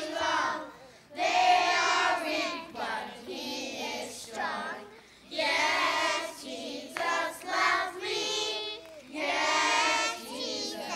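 A group of children singing a song together in sung phrases, with short breaks between the lines about one, five and nine seconds in.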